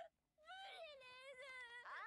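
Faint, high-pitched voice of an anime character speaking in a wailing, tearful tone from the episode's audio, played low.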